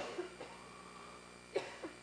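A pause in a talk in a large hall: the echo of the last words dies away into faint room tone with a steady low hum. Near the end come two brief, soft sounds from a person, such as a breath or a small cough.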